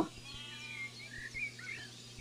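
A few faint bird chirps around the middle, over a low steady electrical hum.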